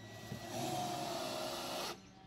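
Power drill driving a 2.5-inch screw into a deck board to stop it squeaking: a motor whine that sags slightly in pitch under load over a gritty hiss, cutting off suddenly near the end.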